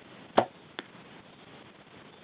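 Bow shot: a loud, sharp crack as the string is released, then about 0.4 s later a fainter click of the field-point arrow striking the target 30 yards away.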